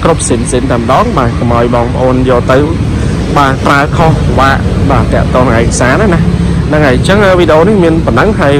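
A voice talking almost without a break over a steady low hum from the Hyundai Starex van's engine idling.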